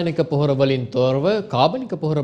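Speech only: a male news anchor reading the news aloud in Sinhala, steady and unbroken.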